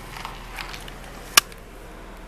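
A single sharp click or tap about one and a half seconds in, over a steady low background with a few fainter ticks.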